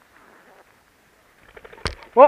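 Footsteps rustling through a leafy crop, faint at first, then a quick run of soft crunches and one sharp knock just before the end.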